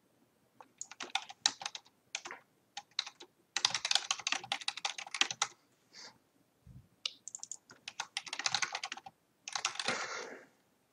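Typing on a computer keyboard: quick runs of keystrokes in several bursts, with short pauses between them.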